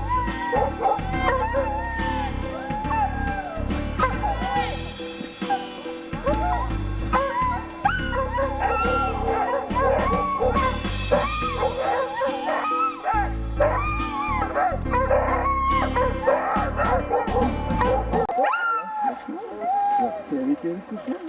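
A team of harnessed sled dogs yipping, barking and howling together in an excited, unbroken chorus of short rising-and-falling calls.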